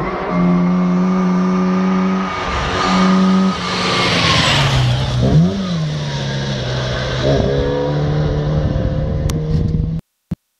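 Rally car engine on a gravel forest stage, held at high revs with the throttle lifting off and coming back on twice in the first few seconds. A burst of hiss follows about four seconds in, then a quick rise and fall in revs, then a steady engine note as the car comes down the road.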